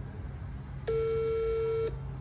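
Phone ringback tone over a speakerphone: one steady beep of about a second, starting a second in, the sign that the outgoing call is ringing at the other end.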